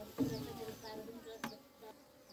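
Honeybees buzzing close by with a steady, slightly wavering hum, while birds chirp high and short in the background. A single sharp click comes about a second and a half in.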